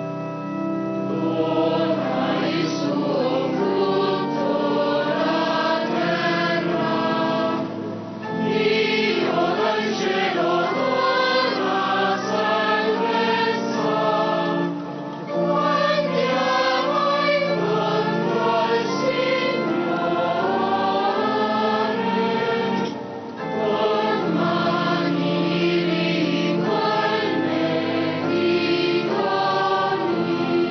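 Choir singing a hymn with organ accompaniment, in phrases broken by short pauses about eight, fifteen and twenty-three seconds in.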